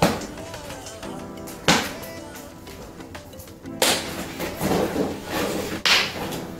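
Snap fasteners on a solar cooker's reflector popping apart and pressing shut: four sharp snaps spread about two seconds apart, with rustling of the flexible reflector sheet being handled between them, over steady background music.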